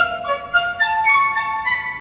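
Orchestral film-score music: a slow line of held notes on woodwind, flute-like, over strings, stepping upward in pitch.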